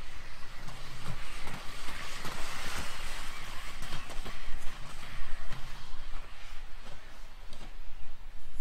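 Inline speed skates rolling fast over an asphalt track, a rushing wheel hiss with a few short clicks, swelling about two to three seconds in and then easing off, over a low wind rumble on the microphone.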